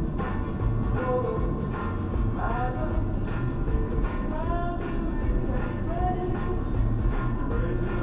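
A song with a singing voice playing on the car radio inside the cabin, over the car's steady low rumble.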